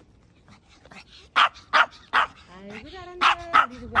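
Maltese dog barking in short, sharp, repeated barks, starting about a second and a half in, with a drawn-out rising howl in the middle: protest barking at being made to ride in a stroller.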